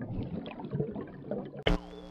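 A sharp hit near the end, followed by a steady, ringing electronic tone with many overtones: the start of a network logo sting, after a faint noisy background.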